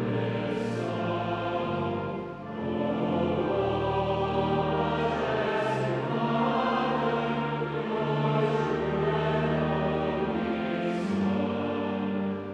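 A choir singing in sustained, held phrases over long low accompanying notes, with a brief break between phrases about two seconds in.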